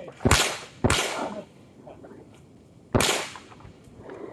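Three shots from a GSG Firefly .22LR long-barrelled pistol with a muzzle brake, firing CCI Minimag rounds: two about half a second apart, then a third about two seconds later, each with a short echoing tail.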